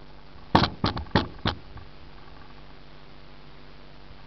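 Four quick sharp knocks in about a second, from a hand working a rag over a car's metal hood right at the microphone, followed by a faint steady hiss.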